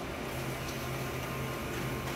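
Office multifunction copier running while it prints a copy: a steady mechanical hum, with the sheet feeding out into the output tray near the end.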